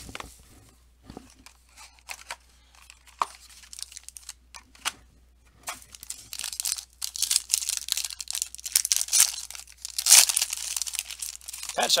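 Light taps and handling of a cardboard trading-card box, then, from about six seconds in, a long burst of crinkling and tearing as a shiny plastic card-pack wrapper is ripped open, loudest near the end.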